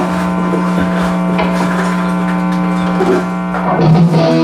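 An electric guitar through its amplifier holding one steady, sustained note. Near the end the band comes in and the song starts.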